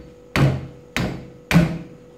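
A heavy kitchen knife chopping through a fish on a thick round wooden chopping block: three hard chops about half a second apart, each dying away quickly.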